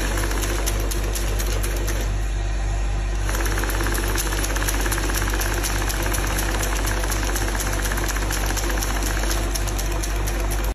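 Banknote counting machine running: a steady motor hum with a rapid, dense clicking flutter as the notes are fed through one after another. A higher whirring joins about three seconds in.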